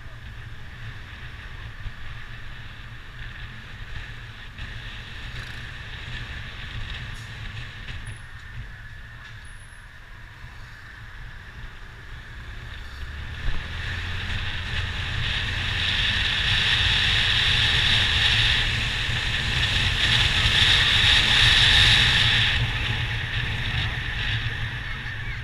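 Wind rushing over the microphone of a moving motorcycle, with the engine and road rumble underneath. The rush grows much louder from about halfway through, as the road opens up, and eases again just before the end.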